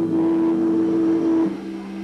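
Live gothic rock band holding sustained, droning notes: a strong high note stops about one and a half seconds in, leaving a quieter, lower held note.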